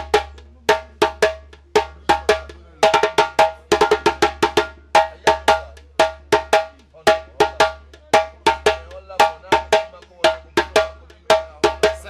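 Djembe played with bare hands in a repeating accompaniment rhythm: sharp, ringing slaps and tones about three to four strokes a second, with a quick flurry of strokes about three seconds in.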